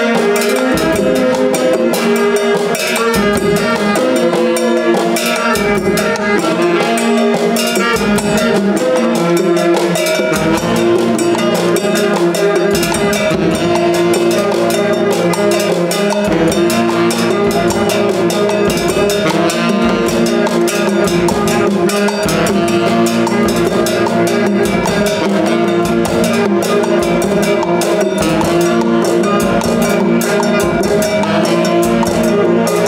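Live band of several saxophones playing held, overlapping notes over a steady drum-kit beat, with bongos and other hand percussion struck alongside.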